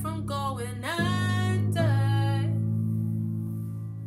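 Female voice singing a held, wavering line over sustained accompaniment chords. The voice stops about two and a half seconds in, and the chords ring on, fading slowly.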